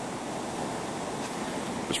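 Steady, even rushing noise with no distinct events, the kind made by wind across the camcorder or by distant moving water.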